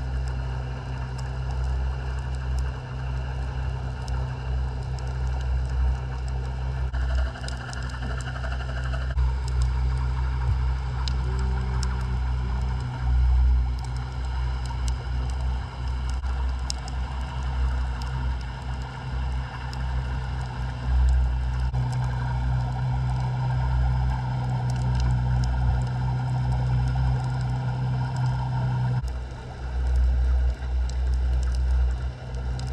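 Underwater sound heard through a camera housing at depth: a steady low rumble with faint steady hums that shift a little now and then, and sparse faint clicks.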